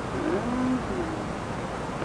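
A man's voice making a soft, low murmur in the first second, a short hum-like sound that glides in pitch, followed by a steady background hiss.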